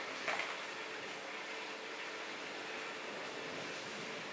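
Quiet steady room noise with a faint constant hum, and one brief soft sound just after the start.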